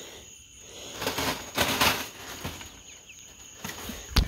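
Rustling and scuffling in a wire-mesh bird pen, strongest about a second to two seconds in, over a steady high cricket trill.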